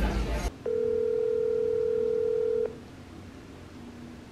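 Telephone ringback tone heard through a phone's speaker: one steady ring about two seconds long, starting about half a second in, then a quiet gap. It is the call ringing at the other end, not yet answered.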